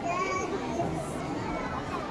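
Many children's voices chattering and calling at once, a general hubbub of a large group of kids rather than singing.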